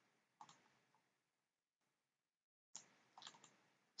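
Faint computer mouse clicks over near silence: one about half a second in and a few more near the end.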